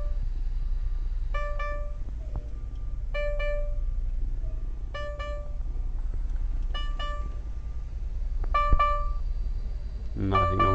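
Volvo D13 diesel engine idling with a steady low hum, under an electronic warning chime that sounds a short group of tones about every two seconds.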